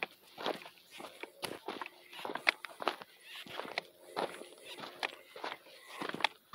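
Footsteps crunching on a gravelly dirt track at a walking pace, about two steps a second.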